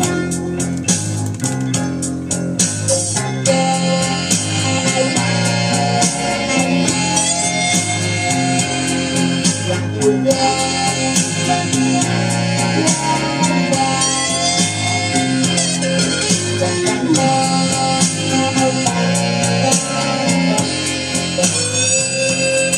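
Blues on electric guitar: lead lines with bent notes played over a steady band backing with bass and keyboard.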